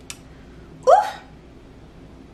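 A woman's single short, sudden vocal sound that rises in pitch, like a hiccup, about a second in, just after a faint click.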